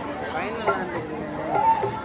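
Speech only: men talking, with chatter in the background.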